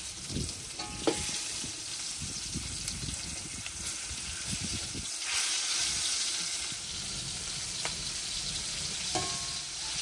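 Milkfish steaks sizzling steadily in hot oil in an aluminium wok, with a metal spatula scraping and clinking against the pan as the pieces are turned. Clinks come about a second in and again near the end, and the sizzle grows louder about five seconds in.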